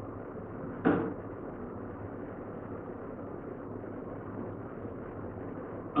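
Steady room noise with a single short knock about a second in.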